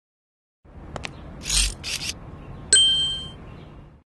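Two faint clicks and two short rustling bursts, then a single bright metallic ding about two-thirds of the way in that rings for about half a second before fading.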